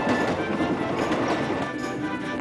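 Background music over the sound of a steam locomotive running fast, its wheels clattering on the rails.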